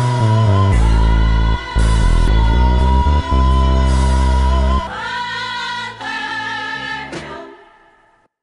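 Music: a song with a sung vocal over a heavy bass line. The bass drops out about five seconds in, and the song fades out near the end.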